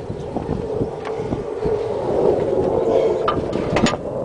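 KAMAZ truck diesel engine idling steadily, heard close up at the open engine bay, with a couple of light clicks near the end.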